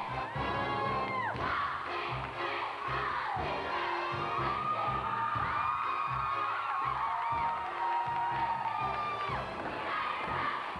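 Stage-show music with a steady beat, under a live audience cheering with long, high-pitched whoops and screams throughout.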